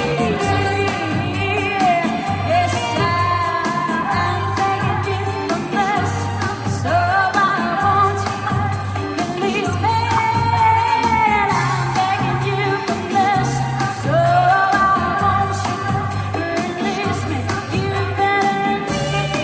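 Live pop song through a PA system: a woman singing the melody over a backing track with a bass line pulsing on a steady beat.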